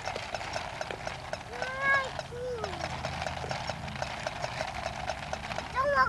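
Walking toy puppy on a leash, its clockwork-like walking mechanism clicking rapidly and steadily as it moves along the pavement. Two short high-pitched calls sound over it, about two seconds in and near the end.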